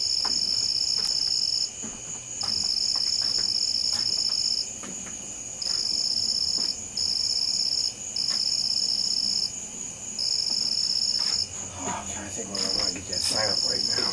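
Night insects singing: one high, steady pulsing trill runs on throughout, while a second, slightly lower insect sings in trills of one to two seconds separated by short breaks, about eight of them.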